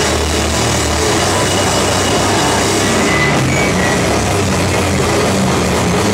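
A live rock band playing loud and heavy: electric bass and drum kit in one continuous, dense wall of sound.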